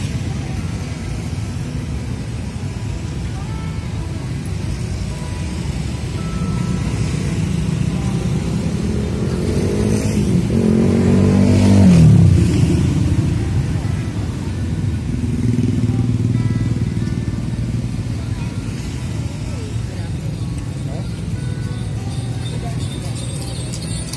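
Street traffic, with a motorcycle passing about ten to thirteen seconds in: its engine note grows loudest, then drops in pitch as it goes by.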